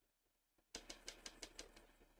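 Watercolor brush working paint in a palette mixing well: a quick run of about seven faint ticks, about six a second, starting about three-quarters of a second in and fading after about a second.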